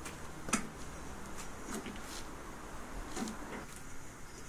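Quiet background with a few faint ticks and one sharper click about half a second in.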